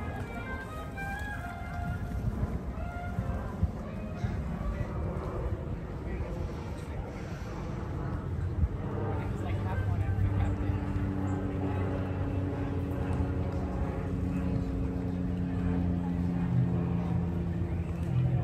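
Voices and music in the background, with a steady low hum that grows louder about halfway through and holds to the end.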